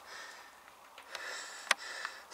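Close breathing through the nose, soft and hissy, with a few sharp ticks of footsteps on the gritty floor of a stone burial passage, the clearest one near the end.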